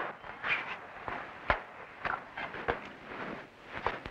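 Footsteps: a string of short knocks about half a second apart, the loudest about a second and a half in.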